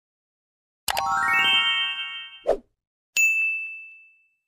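Subscribe-animation sound effects. About a second in there are two clicks and a quick rising run of chime notes that ring on, then a short click-pop, and in the last second a single bright bell ding that rings out.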